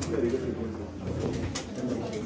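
Indistinct low murmur of several people talking at once in a room, with no clear words.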